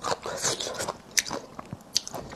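Close-miked chewing of a mouthful of crisp lemon-pickled bamboo shoot strips: irregular wet crunches, with a sharper crack about a second in.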